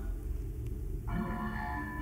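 Electronic music from a robot performance's sound design: a low drone, joined about a second in by a chord of steady, held high tones.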